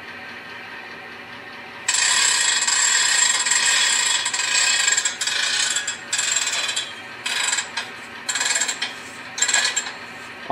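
Model railroad sound effect of a freight car handbrake being wound on: ratchet clicking that starts about two seconds in, runs unbroken for about three seconds, then comes in shorter bursts until near the end.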